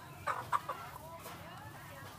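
A chicken clucking, with two sharp, loud calls in quick succession near the start, then softer clucks.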